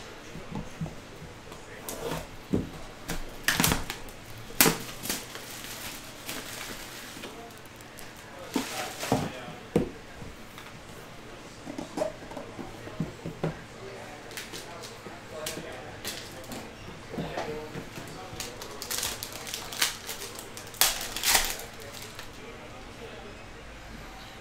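A cardboard trading-card box being handled and opened: scattered taps, scrapes and knocks of the box and its lid under the fingers, with a few louder clicks near the middle and near the end.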